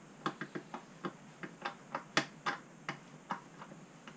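Old gear oil dripping from the drain hole of a Yamaha F4 outboard's lower gearcase into a plastic container, as the gearcase drains during an oil change. The drops land as sharp ticks at uneven intervals, about three a second.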